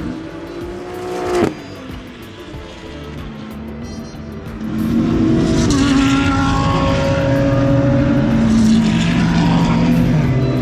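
GT3 race car engines on track. One car's engine note climbs and then cuts off abruptly about a second and a half in. After a quieter stretch, louder engine sound returns from about five seconds on.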